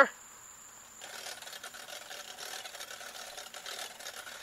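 Fast, steady mechanical ticking that starts about a second in and runs on at a moderate level.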